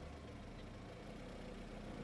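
A car engine idling steadily.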